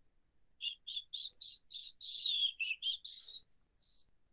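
A bird chirping: a run of about a dozen short, high notes, roughly three a second, starting under a second in, one of them sliding down in pitch midway.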